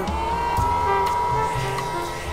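Hair dryer switched on: its motor whine rises quickly and then holds steady over a rush of air, with background music playing underneath.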